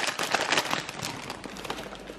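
Mixed nuts tumbling from a plastic bag into a plastic NutriBullet blender cup: a quick run of small clicks and rattles that thins out in the second half, with some crinkling of the bag.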